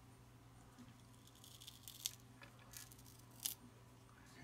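Faint handling sounds as the rubber lip on the bottom of a JBL Clip+ Bluetooth speaker is peeled away from its double-sided tape: a soft rustle with two small clicks, the second and louder one near the end.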